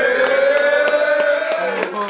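A man's voice holding one long, drawn-out note into a microphone, like a hype call to the crowd, dipping and cutting off near the end.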